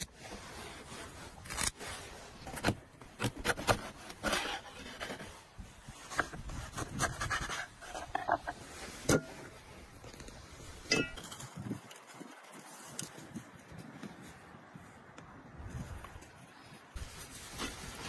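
A whole fish being scaled with a handheld scaler, then handled and cut on a wooden board, heard as irregular scrapes and sharp knocks. There is a quieter stretch past the middle.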